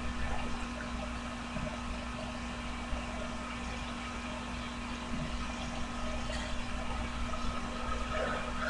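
Steady low hum and faint hiss of room tone through a webcam microphone, with no distinct event.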